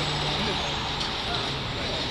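Street traffic noise with a heavy road vehicle's engine running steadily as a low hum, and faint voices in the background.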